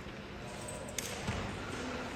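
Steady room noise with a single sharp knock about a second in, followed shortly by a duller thud.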